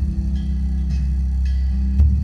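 Background music with sustained low notes, changing chord about three-quarters of the way through.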